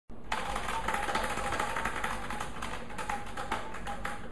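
A hand-spun prize wheel ticking rapidly as the pegs around its rim click past, the ticks spacing out as the wheel slows.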